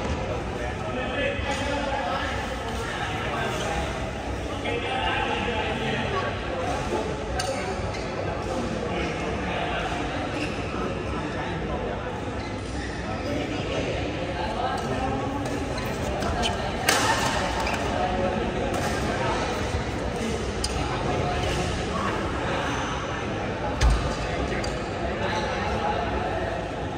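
Badminton rackets striking a shuttlecock in a doubles rally: sharp hits at intervals, two loud smashes about two-thirds of the way in and near the end, over steady background chatter echoing in a large hall.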